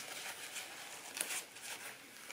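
Faint rustling of a disposable dust mask being handled and fitted over the face, with a couple of soft brushes a little after a second in.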